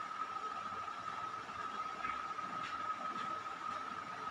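Pause in speech: faint steady background hiss with a thin constant high-pitched whine.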